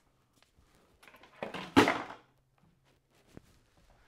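Someone rummaging off to the side for a pair of shears: light clicks and rustling, then one sharp thunk about two seconds in.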